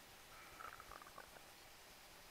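Near silence: room tone, with a few faint, brief soft sounds between about half a second and a second and a half in.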